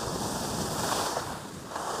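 Skis sliding over groomed snow on a downhill run, with wind rushing over the microphone: a steady hiss that swells a little about halfway through.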